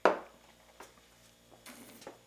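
A cocktail glass set down on the bar top with one sharp knock, followed by a faint click and a brief soft rustle near the end.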